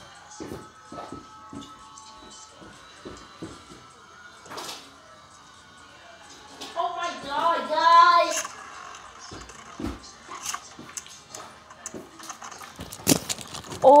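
Background music with scattered small clicks. About seven seconds in, a loud wavering vocal exclamation lasts about a second and a half.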